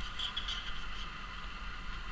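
Room tone: a steady, even hiss with a low hum underneath and no distinct event.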